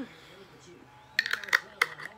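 A small candle jar being handled: a quick run of sharp clicks and clinks about a second in, three of them loud.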